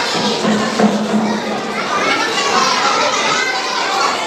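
Many children's voices at once, chattering and calling out together, echoing in a large hall.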